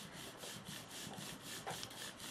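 Inked rubber brayer rolling across paper: a faint rasping rub with a quick, even pulse.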